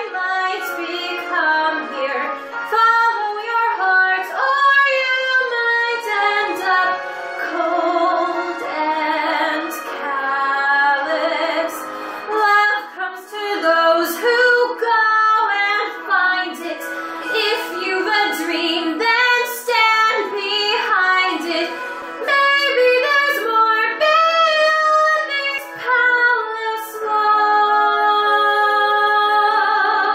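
A woman singing a Broadway show tune, with vibrato on the held notes.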